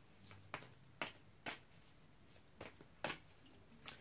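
Quiet room tone broken by about half a dozen faint, sharp clicks at irregular moments.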